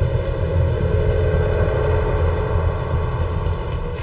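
Steady deep rumble with a sustained drone tone held above it.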